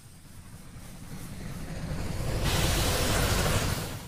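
Sound effects from an anime clip: a low rumble that swells steadily, then a loud hiss that starts about two and a half seconds in and cuts off just before the end.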